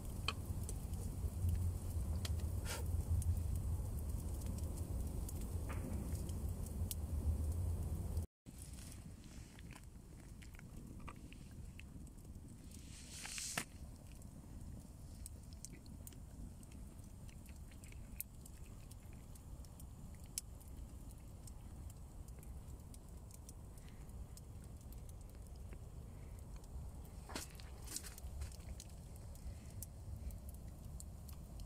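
Small wood fire crackling with scattered sharp pops and snaps, over a low rumble that breaks off suddenly about eight seconds in, after which the crackle continues more quietly.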